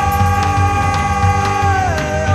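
Live band music: a transverse wooden flute holds one long high note, then drops in pitch near the end, over a steady drum beat.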